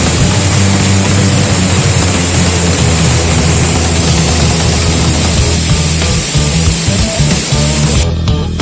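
Steady rush of a waterfall pouring into a plunge pool, with background music underneath.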